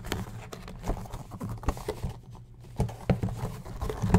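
Fingers picking and scratching at the cellophane wrap and cardboard of a sealed trading-card hobby box, giving an irregular string of small clicks and taps. The wrapped box is proving hard to open.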